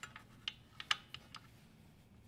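A handful of light clicks and taps from hands handling the motor's belt drive and tensioning spacer, the loudest about a second in.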